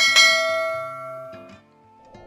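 Notification-bell chime sound effect: a single bell strike that rings with several clear tones and fades away over about a second and a half.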